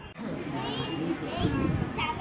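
Chatter of a crowd with children's high voices calling and playing. It gets suddenly louder a moment after the start.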